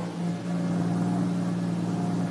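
Open jeep's engine running steadily at low speed as it pulls up, a low even hum.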